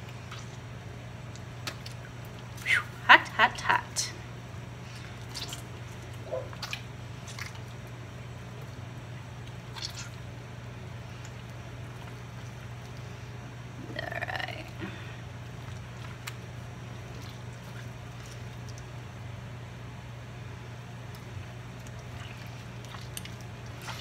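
Hands squeezing and kneading a warm mozzarella curd over a pot of hot whey-water, working salt into it: soft wet squishing and dripping, with a few sharp splashes or knocks about three seconds in. A steady low hum runs underneath, and a short voice-like sound comes near the middle.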